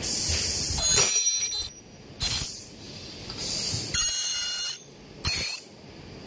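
High-frequency plastic welding machine working: five loud hissing bursts in quick succession, two of them carrying high whistling tones.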